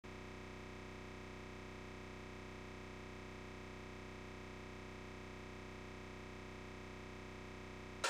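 A faint, steady electronic drone or buzz made of many held tones at once, unchanging in pitch and level, cutting off at the end.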